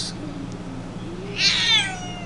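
Domestic cat meowing once, about a second and a half in: a single high call that falls in pitch.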